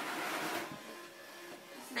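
Faint background music, with a short breathy stifled laugh in the first second.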